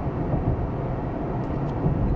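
Steady low engine and road rumble inside a moving car's cabin.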